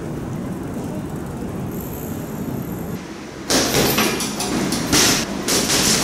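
Steady low street background noise, then, starting about three and a half seconds in, a quick irregular run of loud strikes: kicks and punches landing on a hanging heavy bag.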